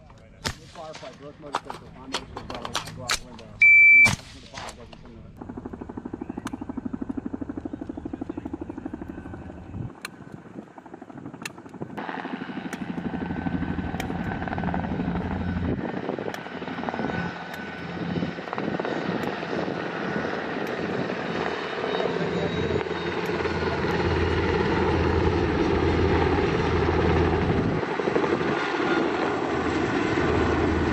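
A few sharp clicks and a loud beep about four seconds in. Then, from about five seconds in, the steady rhythmic thrum of a CH-47 Chinook tandem-rotor helicopter in flight, which grows fuller from about twelve seconds in and keeps getting louder toward the end.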